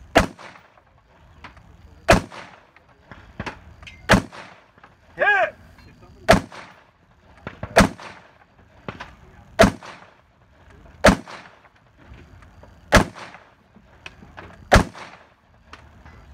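Rifle fired from prone at long range, nine sharp shots at a steady pace of about one every one and a half to two seconds.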